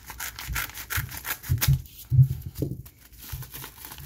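Scissors snipping along the edge of a plastic bubble mailer in a quick, irregular run of cuts, with crinkling plastic and a few dull handling thumps.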